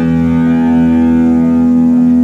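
Electric guitar and bass guitar letting the song's final chord ring out through their amplifiers: one loud, steady held chord whose upper notes slowly fade.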